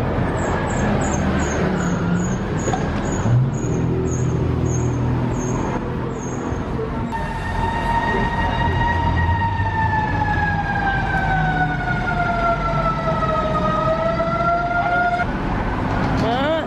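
City street traffic rumble, then about halfway through an emergency vehicle's siren wailing, its pitch sliding slowly down and starting back up before it cuts off near the end.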